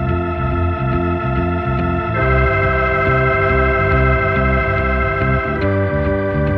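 Instrumental passage of a 1970s rock recording: held keyboard-like chords over a repeating low bass pattern. The chord changes about two seconds in and again near the end.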